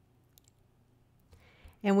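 A few faint computer mouse clicks over a quiet room, followed by a short breath and the start of speech near the end.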